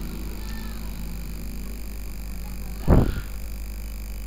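Steady electrical hum and hiss from a desktop microphone, with one short, loud sound about three seconds in.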